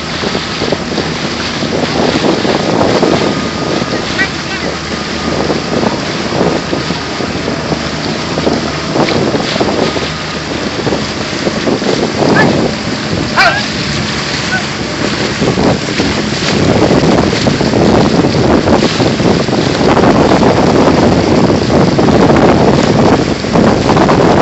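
Wind buffeting the microphone over water splashing from an outrigger canoe being paddled alongside, getting louder about two-thirds of the way through.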